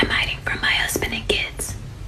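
A person whispering in short breathy bursts, over a steady low hum.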